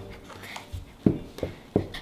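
Wooden stick stirring a thick mix of white glue and shaving cream in a plastic tub for fluffy slime: soft squelching, with three short sharper squishes in the second half.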